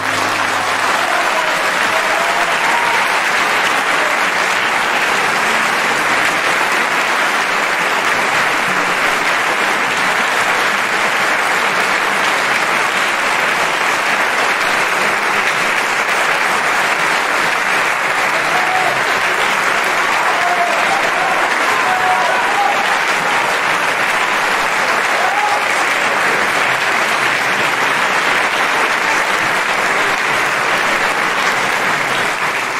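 Opera house audience applauding steadily after a tenor aria, the clapping starting as the orchestra's last chord dies away.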